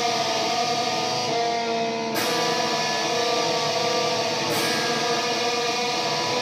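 Electric guitar played through an amplifier: long sustained notes that ring on, changing with a fresh pick attack about two seconds in and again about four and a half seconds in.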